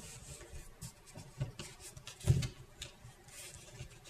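Faint clicks and rubbing of a loom hook and rubber bands working on the plastic pegs of a Rainbow Loom, with one louder low thump a little past halfway.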